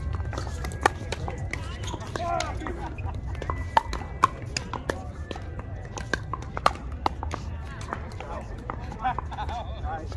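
Pickleball paddles striking a hard plastic pickleball in a fast rally: a string of sharp, irregular pops, the loudest about four seconds in and near seven seconds, with fainter pops between them. A steady low wind rumble on the microphone runs underneath, with faint voices now and then.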